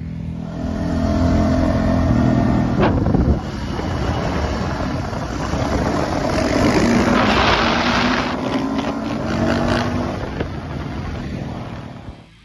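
Dirt bike engine revving hard, louder from about a second in and easing off near the end, with a single sharp click about three seconds in.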